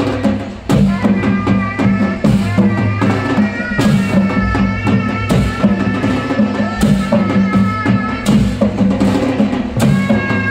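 Live traditional folk music: long double-headed barrel drums beating a steady, quick rhythm, with a wind instrument playing a melody of held notes over them from about three seconds in.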